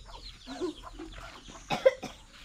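Chickens clucking in short, separate calls, with a sharper, louder sound near the end.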